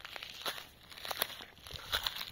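Footsteps on dry pine needles and twigs, with a scatter of short, sharp crackles and snaps.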